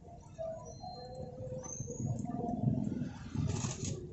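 Roadside ambience: faint distant voices over a low, steady rumble, with a few short high chirps and a brief hiss near the end.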